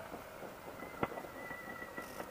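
Faint hiss of a motorcycle helmet intercom line in a pause between words, with a faint steady high tone and a single short click about a second in.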